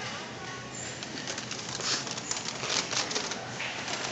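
Irregular soft clicks and rustles of the phone being handled as it swings, over steady store room noise.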